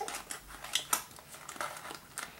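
Small cardboard toy box and its wrapper being handled and opened: irregular crinkles and clicks, the loudest a little under a second in.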